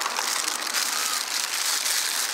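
Plastic bags crinkling and rustling as wrapped parts are handled and lifted out of a cardboard box, over a steady background hiss.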